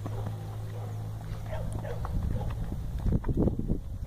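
Hoofbeats of a Mangalarga Marchador colt gaiting in the marcha picada on a dirt arena: a run of soft, irregular thuds that grow louder in the second half. A steady low hum underlies the first half.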